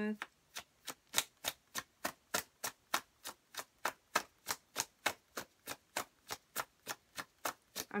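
A tarot deck being shuffled overhand, small packets of cards tapping down onto the pile in a steady rhythm of about three to four taps a second.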